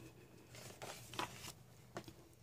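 Faint rustle of a paper page being turned by hand in a small hardcover sketchbook, with a couple of soft ticks near the middle.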